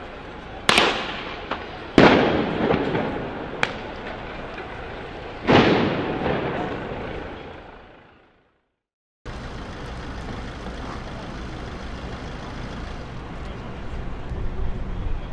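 A series of loud detonations: a sharp bang under a second in, then two big blasts, each followed by a rush of noise that dies away over a couple of seconds, with a small crack between them. The sound then fades into a moment of silence, after which steady outdoor background noise returns.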